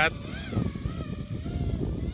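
FPV racing quadcopter flying close by, its motors whining with a pitch that wavers up and down as the throttle changes, over a steady low rumble.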